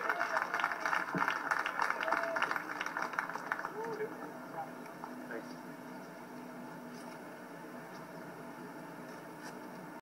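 Golf gallery applauding an approach shot that finishes close to the pin. The applause fades out after about four seconds, heard through a TV's speaker.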